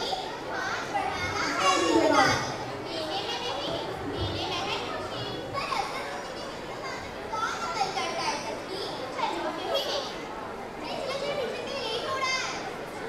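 Several children's voices talking and calling out, overlapping one another, with no clear words.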